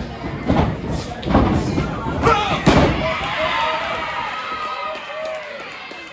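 Bodies slamming onto a wrestling ring's mat: several heavy thuds in the first three seconds, the loudest near three seconds in, with a small crowd shouting and cheering.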